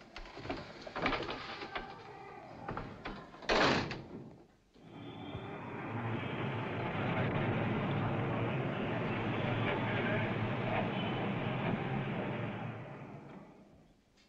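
Steady city street traffic din that fades in, holds for about eight seconds and fades out, after a brief loud noise about three and a half seconds in.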